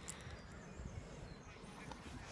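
Faint rumble and rustle of a phone being handled and swung around while it records.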